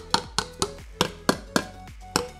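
Hammer tapping a lid down onto a metal POR-15 paint can through a rag laid over it: a run of quick, light taps, about three a second.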